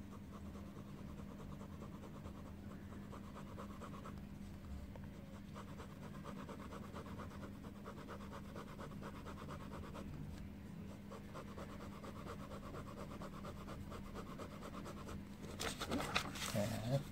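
Ballpoint pen scratching on paper in rapid back-and-forth strokes, shading in thick bars, in three stretches with short pauses. A low steady hum runs underneath, and a louder rustle of paper comes near the end as the sheet is moved.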